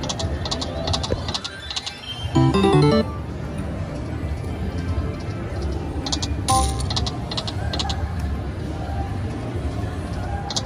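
Konami Dynamite Dash slot machine playing its game music and reel sound effects over several spins, with casino din underneath. The loudest moment is a short jingle of stepped notes about two and a half seconds in, and another chime rings out around two-thirds of the way through.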